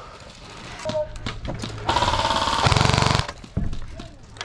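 Airsoft PKM machine gun firing one rapid full-auto burst of about a second and a half, starting about two seconds in.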